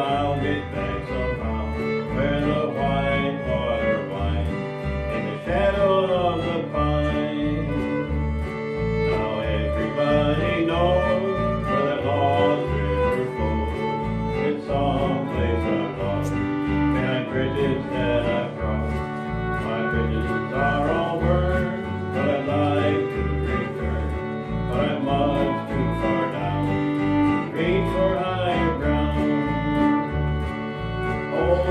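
Country band playing: fiddle taking the lead with sliding notes over strummed acoustic guitars.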